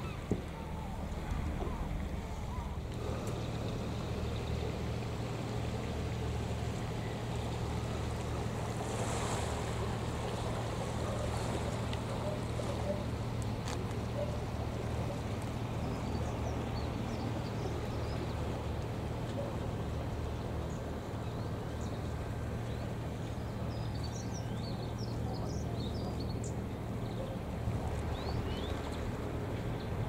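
Steady low drone of a boat's diesel engine running across the harbour, under a haze of wind and lapping water.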